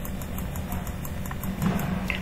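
Mouse button clicking quickly and repeatedly, about three to four clicks a second, over a steady low background hum.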